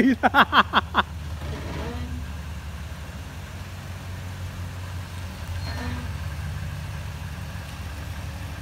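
Toyota Tundra's V8 with dual exhaust running at a low idle as the truck backs up slowly a few feet: a steady low rumble that gets a little louder about six seconds in.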